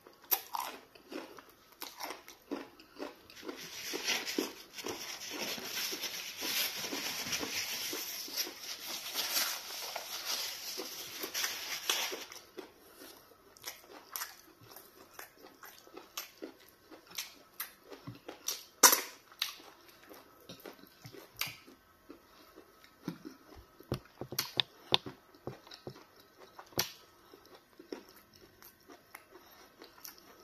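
Close-up wet chewing and biting of meat off a large bone coated in egusi soup, with mouth smacks and clicks. A denser, noisier stretch of chewing lasts from about three to twelve seconds in, then the smacks grow sparser, with one sharp, loud click about nineteen seconds in.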